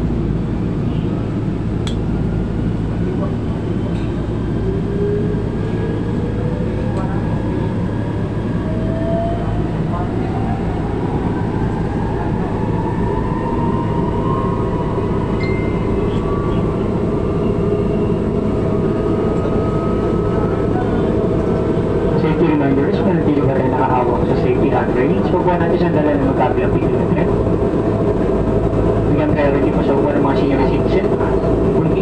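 Metro Manila MRT-3 train pulling out of a station, heard from inside the passenger car. A steady low hum runs under an electric motor whine that rises slowly in pitch as the train gathers speed. Rattling and clatter of the car on the track set in during the last third.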